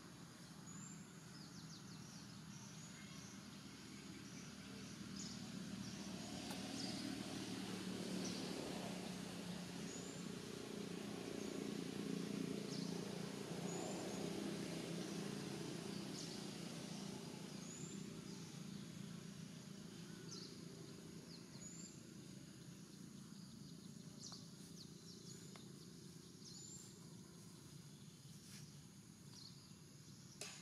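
Quiet outdoor ambience. A short high chirp repeats every two to three seconds among scattered faint clicks, over a low rumble that swells through the middle and then fades.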